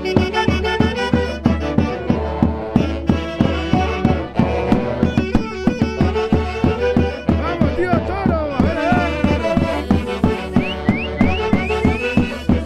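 Live wind band of saxophones and clarinets with a bass drum playing a traditional Andean dance tune over a steady drum beat. Short rising melodic runs sound near the start and again near the end.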